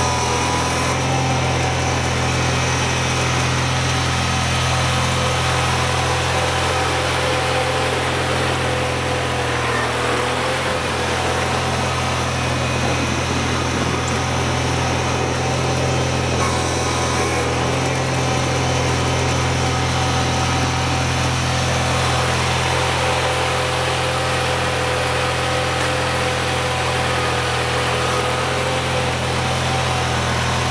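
Wheel Horse 520-H garden tractor engine running steadily at working speed as the tractor pushes snow with its front blade.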